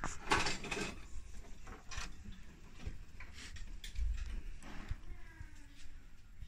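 Rustling and light clicks of hands handling the wiring and plastic parts inside an opened gas fan heater, loudest just after the start.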